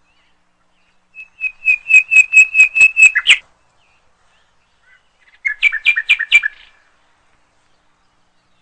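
A bird singing: a quick run of about eight repeated high chirps, about four a second, then after a pause a shorter run of about five.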